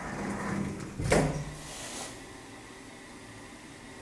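Automatic sliding door of a small hydraulic passenger elevator closing: a low steady hum from the door operator for about a second, ending in a single sharp knock as the door shuts, followed by a short hiss.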